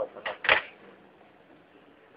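A person clearing their throat once, a short, harsh burst, then only faint background noise.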